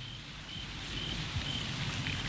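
Faint, short, high chirps repeating about twice a second over a low background hiss, like insects chirping in a night-time outdoor ambience.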